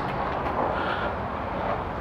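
Steady outdoor background noise, an even low rumble with no distinct events.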